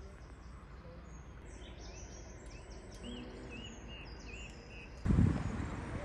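Small birds chirping outdoors, a run of short repeated chirps over quiet rural ambience. About five seconds in, a louder low rumbling noise cuts in suddenly.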